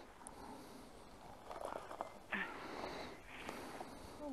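Faint breathing close to the microphone, with soft breaths at the start and near the end, a few light clicks in between and a short voiced grunt about halfway through.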